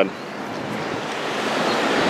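Ocean surf: the hiss and rush of a breaking wave, growing steadily louder.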